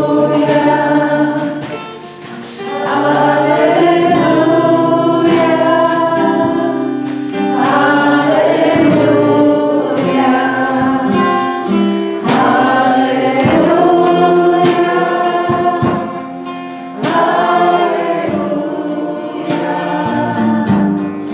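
A congregation singing a worship hymn together, led by a woman's voice at the microphone, with acoustic guitar accompaniment. It comes in phrases with short breaths between them.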